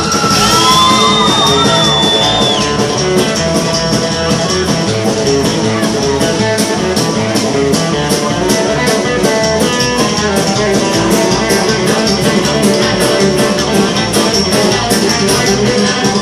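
Live band playing with acoustic and electric guitars, upright bass and drums at a steady beat. A short high note slides up and back down in the first couple of seconds.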